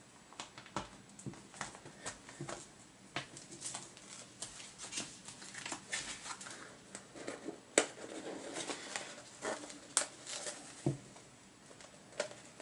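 Thin plastic comic display sleeves and small plastic snap pegs being handled during assembly: scattered light taps, clicks and crinkles, with a few sharper clicks about eight and ten seconds in.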